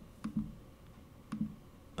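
Two light computer mouse clicks, about a second apart.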